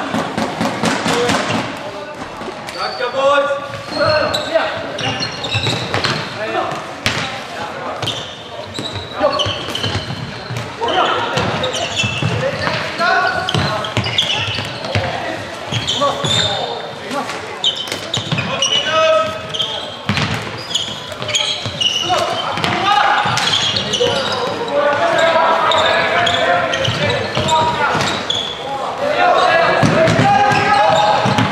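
Floorball game sounds in a large sports hall: players and spectators calling out, their voices echoing, with frequent sharp clacks of sticks and the plastic ball.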